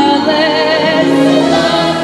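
Stage-musical number with a group of voices singing together in chorus, the held notes wavering with vibrato.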